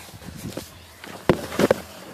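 Handling noise from a phone camera being moved and covered close to its microphone: a sharp knock a little over a second in, then a few smaller knocks and rubs.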